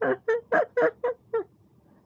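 A woman giggling behind her hand: a quick run of short laugh bursts, about four a second, that stops about one and a half seconds in.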